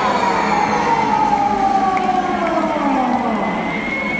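A long siren-like tone falling steadily in pitch over about three and a half seconds, over the continuous din of an arena crowd; a high steady tone starts near the end.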